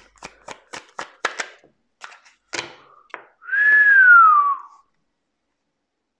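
A deck of tarot cards shuffled by hand, the cards snapping together about four times a second for a couple of seconds. Then comes a single loud whistled note, about a second long, that slides down in pitch.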